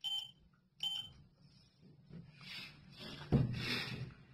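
Two short electronic beeps from a Schindler elevator car's signal, about a second apart, then a louder rushing noise in the last second or so.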